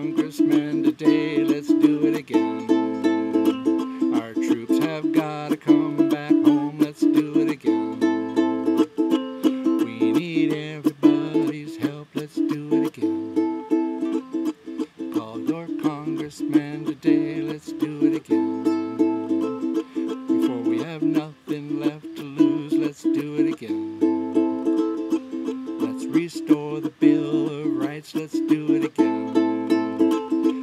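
Ukulele strummed in a steady rhythm, an instrumental break in a folk song, with the chords changing every second or two.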